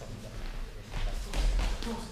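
Footsteps and shuffling of fencers on a sports hall floor, with a few thuds and taps that get louder from about a second in.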